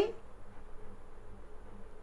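A faint, steady hum of room background in a pause between spoken phrases.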